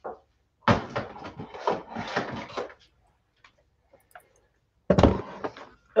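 An X-ACTO paper trimmer being brought onto a cutting mat and set down: about two seconds of rattling and knocking, a pause, then a heavy thump about five seconds in.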